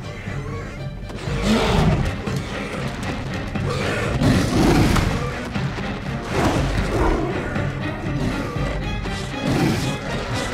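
Dramatic film score with about four heavy thuds and crashes as a sound-designed dinosaur attack plays out.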